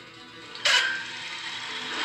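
Table saw cutting wood. It comes in suddenly about two-thirds of a second in and then runs on steadily.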